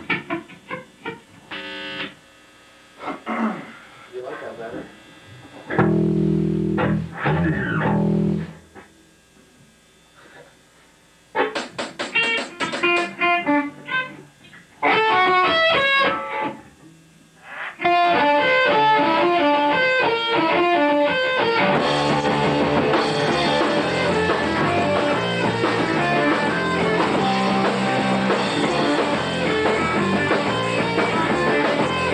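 Electric guitars strumming and picking scattered notes between songs, with a short lull about ten seconds in, then a picked guitar line. About eighteen seconds in, the full band with distorted electric guitars and drum kit starts a rock song, filling out further a few seconds later.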